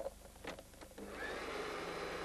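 A click, then a food processor starting about a second in and running steadily as it mixes a chocolate cake batter.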